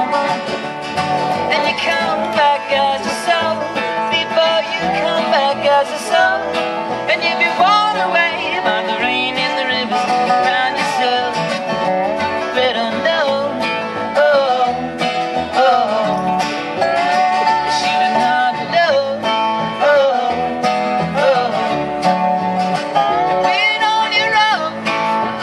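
Live acoustic string band playing a country-folk song: strummed acoustic guitar and a lap steel guitar, with fiddle and upright bass in the band, and a man singing.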